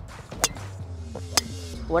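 Two sharp clicks of a golf club striking the ball, a little under a second apart, over background music.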